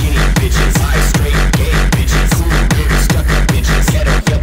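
Hardstyle dance music: a distorted kick drum and reverse bassline pounding out a steady fast beat, with no vocal.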